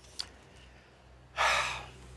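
A person's audible breath, a sigh lasting about half a second, about one and a half seconds in, before answering an emotional question; a faint mouth click comes just before it.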